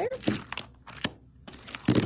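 Clear plastic packaging of a cutting-die set crinkling and crackling as it is handled and flipped over. The crackles come in the first second and again near the end.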